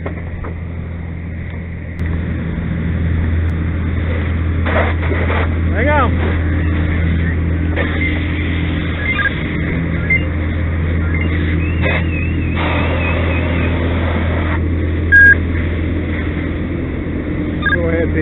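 A steady low engine drone that gets louder about two seconds in, with voices in the background. A short, loud beep comes about fifteen seconds in.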